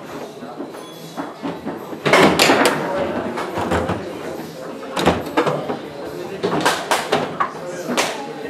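Rosengart foosball table in play: sharp clacks and knocks as the ball is struck by the men and hits the table walls, the loudest about two seconds in, over background voices.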